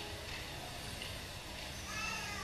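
Quiet pause in a hall: low room noise with soft footsteps of a man's shoes on a wooden stage floor.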